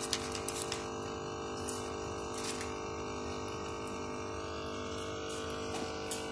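Timer-controlled hydroponic watering system running: a small pump giving a steady hum, with water trickling through the vertical tower planter, which shows that the water is switched on.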